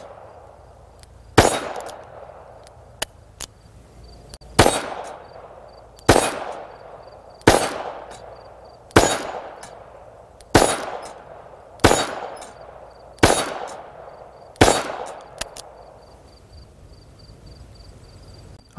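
Rock Island Armory AL22M revolver in .22 Magnum firing a string of about nine single shots, roughly one every one and a half seconds, each followed by a short echo. Between shots there are a few light metallic pings from bullets striking the steel target.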